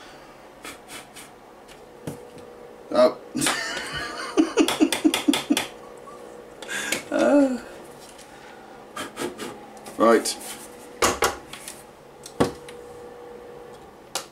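Scattered knocks and clatter as a laser-cut wooden filter box is picked up, tipped and set down, over the steady hum of its inline extractor fan running.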